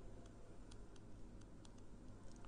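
Faint, irregular light ticks of a stylus tapping and writing on a tablet screen, over a low steady hum.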